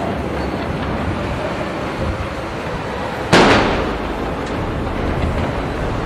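A ceremonial saluting gun firing one blank round about three seconds in: a single sharp bang that dies away over about a second, heard over steady outdoor background noise.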